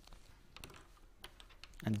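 Faint handwriting sounds: irregular light taps and scratches of a pen or chalk stroke, followed by a spoken word near the end.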